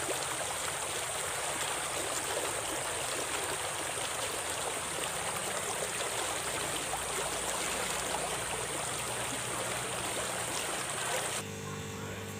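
Small stream running fast in a narrow channel, a steady rush of water that cuts off suddenly near the end.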